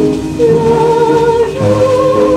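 A 1938 French 78 rpm shellac record playing: a singer with dance orchestra accompaniment, the melody holding one long note and then stepping up to a higher one over the band.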